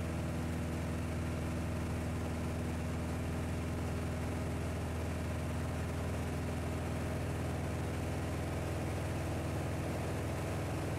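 Piper Archer's four-cylinder piston engine and propeller running at climb power, heard inside the cabin as a steady, unchanging drone.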